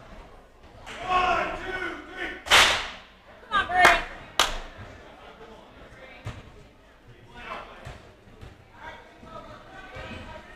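Gym noise: a voice calls out, then three loud, sharp bangs with echo between about two and a half and four and a half seconds in. A few fainter knocks follow.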